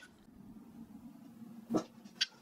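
Quiet room tone with a faint steady hum, and one short, sharp handling sound near the end.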